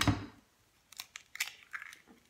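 A hen's egg being cracked into a glass mixing bowl: a few sharp, short cracks of the shell about a second in and again near the end as the shell is broken open and pulled apart.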